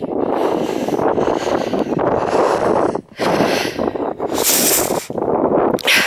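Rustling and wind noise on the microphone of a handheld camera carried across an open field. It is loud and steady, with a brief drop about three seconds in.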